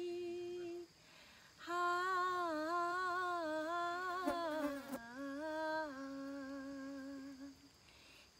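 A woman's voice singing a slow, unaccompanied melody in long held notes, with a short break about a second in. Two brief clicks are heard midway.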